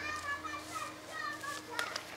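High-pitched children's voices calling and chattering in the background, over a faint steady hum.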